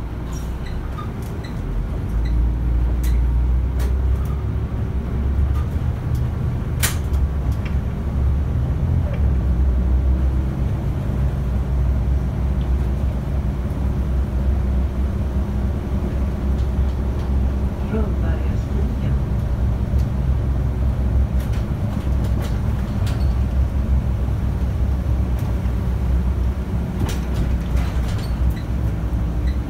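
Volvo city bus heard from inside at the front: the engine drone swells about two seconds in as the bus pulls away, then runs steadily with the bus body rattling and knocking. A run of regular high beeps, about two a second, stops about a second and a half in.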